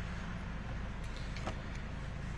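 2017 Ford Escape idling, a steady low hum heard from inside the cabin, with one faint click about a second and a half in.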